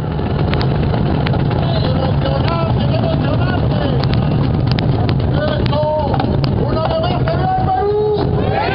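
Hundreds of cajones drummed at once, a dense, steady rumble of bass slaps with many sharp clicks, with shouts from the crowd rising above it.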